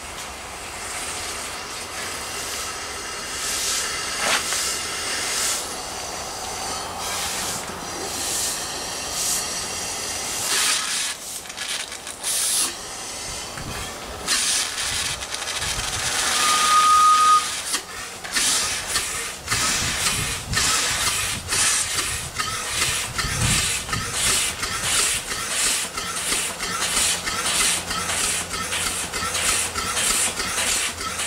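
Upright steam engine being run on low boiler pressure. Steam hisses with irregular puffs as it gets going, a brief high whistle sounds just past halfway, and it then settles into an even run of exhaust chuffs, roughly two a second. Steam is also leaking around the piston rod, where the packing still needs replacing.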